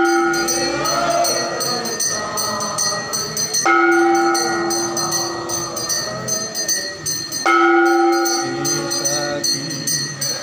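Devotional group singing of a temple aarti, with fast jingling percussion running through it. A bright ringing tone sets in afresh about every four seconds and fades away each time.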